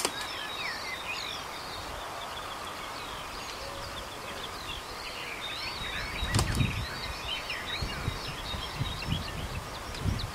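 Small birds singing and chirping, many short rising and falling notes. Intermittent low rumbles come in from about six seconds, with a sharp click at about six and a half seconds.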